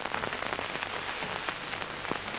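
A steady crackling hiss made of many fine, irregular ticks, with no voice or music.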